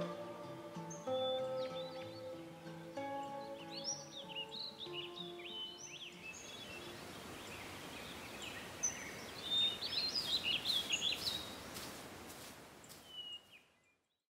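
Soft music with held notes fades out over the first few seconds and gives way to birds chirping and singing over an even outdoor hiss. It all fades to silence at the very end.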